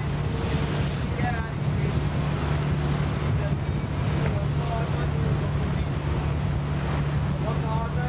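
A boat's engine running with a steady low drone, with wind noise on the microphone and faint voices.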